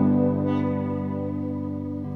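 Electric guitar, a gold-top single-cutaway, holding a chord that rings on and slowly fades, with no new strum.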